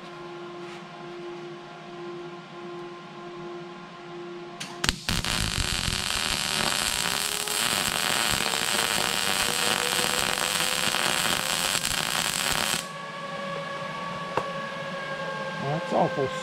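Lincoln Power MIG 260 MIG welder running a bead with 0.035 solid wire under argon/CO2 shielding gas: a steady crackling arc starts about five seconds in and cuts off suddenly about eight seconds later. The machine was set for 18-gauge sheet rather than the quarter-inch plate, so the bead came out small. A steady hum sounds before and after the arc.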